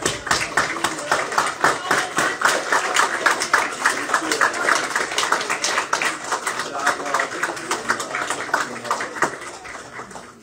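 A roomful of people applauding, a dense patter of hand claps with voices mixed in. The applause dies away near the end.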